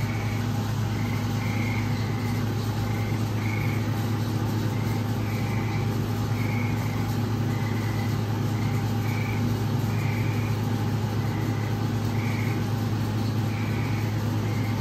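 A steady low electrical hum from equipment running during an ultrasound scan, with short faint high chirps repeating irregularly about once a second.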